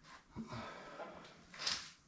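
A man's breathing during a pause in his talk: a soft breath out through the nose, then a quick intake of breath near the end.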